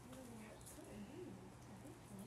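Faint voices of people talking at a distance over a low steady hum.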